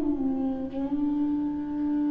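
Bansuri (bamboo flute) holding one long, low, pure note, dipping slightly in pitch right at the start and then steady.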